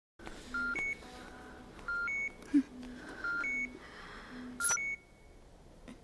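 Electronic beeps in a repeating pattern: four two-note beeps, each a lower tone stepping up to a higher one, about one and a third seconds apart. A sharp click comes about halfway through, and the beeps stop about five seconds in.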